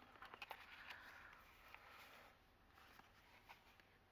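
Faint rustling and light ticks of paper cards and tags being handled and slid out of a paper pocket in a handmade journal.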